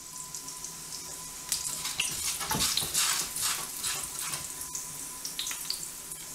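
Garlic cloves sizzling in hot olive oil and margarine in a frying pan, a steady hiss with many small crackling spits, as the garlic is lightly fried to flavour the oil.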